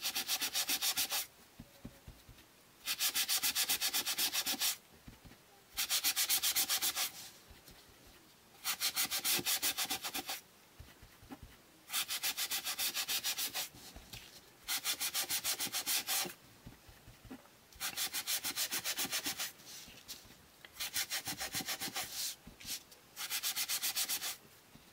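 A small ink-loaded sponge rubbed in rapid short strokes over the edges of cardstock, sponging ink onto the paper. It comes in bursts of about a second or a second and a half, roughly every three seconds, with short pauses between.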